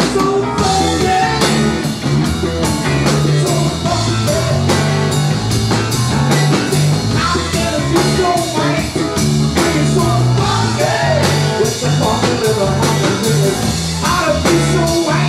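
Live band playing a blues-rock groove: electric guitar, bass guitar and drum kit with a male singer. The band kicks into a steady drum beat and bass line right at the start.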